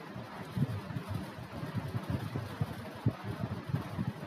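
Low, irregular background rumble over a faint steady hiss.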